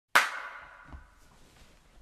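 A single sharp hit just after the start, ringing on with a few steady tones and fading over about a second, followed by a soft knock near the one-second mark.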